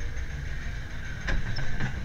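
Maurer Söhne wild mouse coaster car rolling slowly along the station track: a low steady rumble, with two short clicks in the second half.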